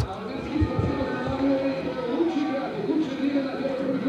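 Background voices at a sports venue, quieter than the commentary, with a few low knocks in the first second.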